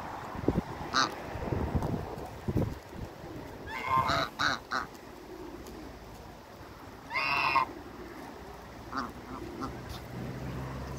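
African geese honking in short calls: a brief one about a second in, a quick run of calls around four seconds, a longer honk near seven seconds, and a few softer calls near the end.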